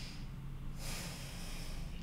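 A woman's audible breath: one long, breathy breath beginning about a second in, over a faint low hum.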